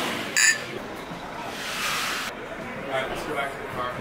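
Two glasses of beer clink together in a toast, a single short knock about half a second in. A hiss follows and cuts off abruptly a little past the middle, with faint voices afterwards.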